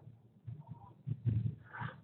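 A man's brief wordless vocal sound, low and faint, about a second in, then a short intake of breath.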